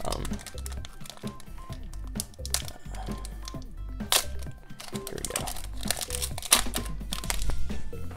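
Foil wrapper of a Pokémon booster pack crinkling and tearing as it is opened by hand, in sharp crackles, the loudest about four seconds in and twice more near the end, over steady background music.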